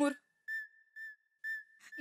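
Three short whistle-like notes at the same high pitch, about half a second apart, over a faint held tone.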